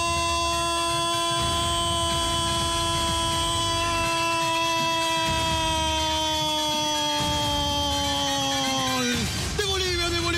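A football commentator's drawn-out goal shout, 'Goooool', held on one note for about nine seconds and sinking slowly in pitch before it breaks off near the end: the traditional Latin American call of a goal just scored.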